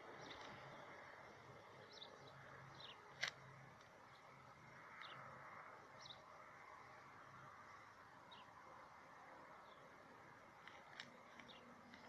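Near silence: faint outdoor background with a few short, high bird chirps and one sharp click about three seconds in.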